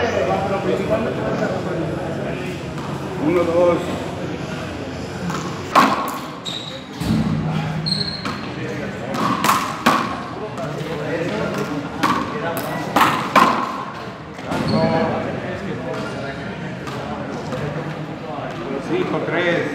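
A frontón ball being hit and bouncing off the walls and floor of an enclosed court during a rally: a string of sharp, echoing hits from about six seconds in to about thirteen seconds, some of them in quick pairs, over background voices.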